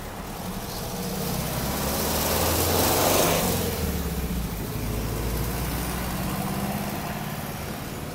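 A motor vehicle passing by, growing louder to a peak about three seconds in and then fading, over a steady low engine hum.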